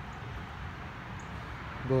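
Steady low background rumble with no distinct events, and a man's voice beginning a word near the end.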